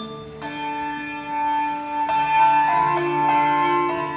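A handbell quartet ringing sustained chords: several bells ring on together and overlap, with new chords struck about half a second in and again about two seconds in.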